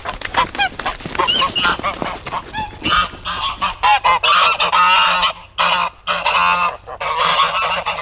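A flock of domestic geese honking while being chased, agitated calls scattered at first, then two long runs of dense overlapping honks in the second half.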